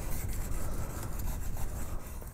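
Steel skew chisel rubbed back and forth on a sharpening stone, a steady scraping rasp as the rounded cutting edge is honed.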